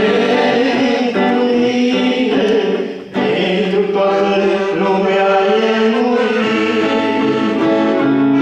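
Live gospel worship song: singing accompanied by an electric guitar. The music dips briefly about three seconds in, then carries on.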